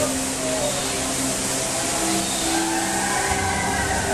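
Dark-ride cave soundtrack: eerie background music with faint voices, over a steady rushing noise of flowing water.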